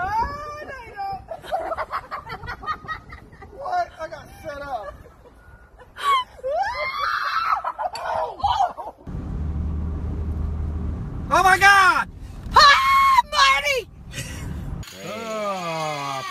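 People laughing and shrieking as a woman is tipped backward off a playground seesaw. Several loud, high-pitched screams come about two-thirds of the way in, over a low rumble of wind or handling on the microphone.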